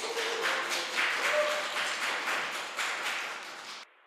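A small group clapping, with uneven claps. It cuts off abruptly shortly before the end.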